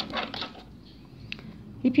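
Quiet hand-handling of a satin ribbon and thread during needle lace work: a soft rustle at first, then a single small click about 1.3 seconds in.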